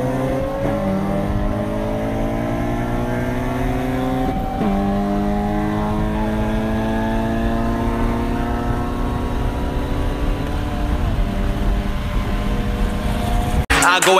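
Car engine accelerating hard through the gears: its pitch climbs steadily, then drops at each upshift, about a second in, about four and a half seconds in and about eleven seconds in, over steady road and wind noise.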